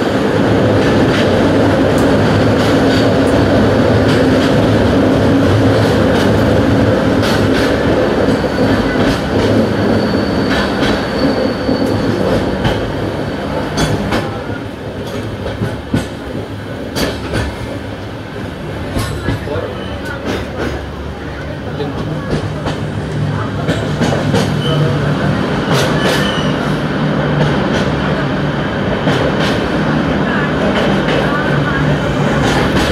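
Passenger train running on the rails, heard from inside a coach, with a steady rumble of wheels and scattered sharp clicks from the track. The sound is louder and denser inside a tunnel at first, drops quieter through the middle in open cutting, and swells again near the end as the train enters the next tunnel.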